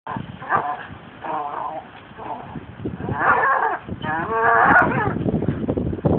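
A pit bull gripping a hanging rope in its jaws makes a series of pitched, wavering vocal sounds, five of them, the last two the longest, followed by quick knocking and rustling as it swings.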